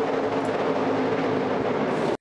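NASCAR stock car V8 engine noise at race speed: a steady drone holding one pitch.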